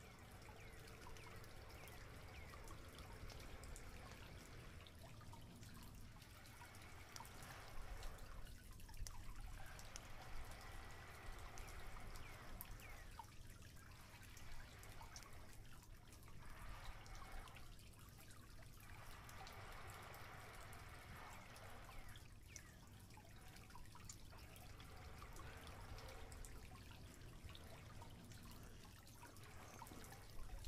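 Small wood campfire crackling faintly, with scattered light ticks over a soft rushing background that swells and fades every few seconds.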